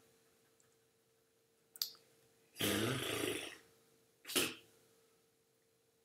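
Quiet room with a faint steady hum and a single sharp computer mouse click just before two seconds in, then a spoken 'and' and a brief sharp noise a little after four seconds.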